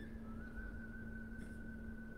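A faint, steady high-pitched whistle-like tone. It drops slightly in pitch shortly after it starts and then holds with a slight waver, over a low steady hum.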